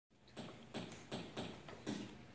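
A rhythmic beat of sharp percussive taps, about two or three a second, setting the tempo for a rap.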